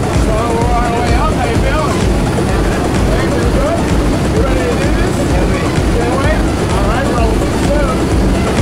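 Loud, steady engine drone of a light jump plane heard inside its cabin, with indistinct voices rising and falling over it.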